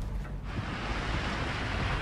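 Water rushing and splashing along the hull of a moving ship, a steady hiss that sets in about half a second in over a low rumble.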